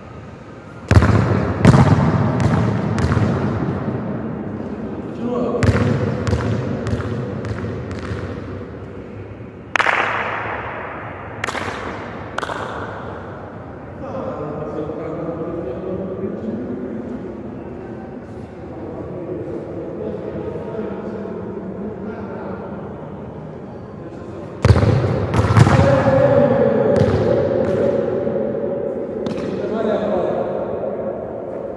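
A football being kicked and bouncing on a hard indoor futsal court, heard as clusters of sharp thumps that echo around the hall. The clusters come about a second in, around five to seven seconds, near ten and twelve seconds, and again near the end.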